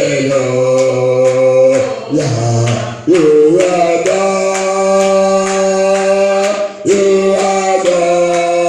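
Church worship singing: voices holding long notes in a slow song, changing pitch every few seconds, over a steady beat.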